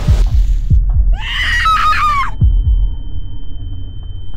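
Film sound design over a low drone: deep heartbeat-like thuds in pairs, a scream a little over a second in that lasts about a second, then a high steady ringing tone that holds on.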